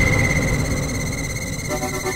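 Breakdown in a tech house remix: the drums drop out, leaving a steady high synth tone over a rumbling, noisy bed that slowly grows quieter, with a synth chord coming in near the end.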